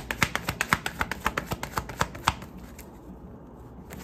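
A tarot deck being shuffled by hand: a rapid run of crisp card-on-card slaps that stops a little over two seconds in, leaving only a few faint ticks.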